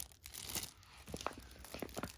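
Faint crinkling and rustling of a clear plastic packaging sleeve being handled, with a few light ticks.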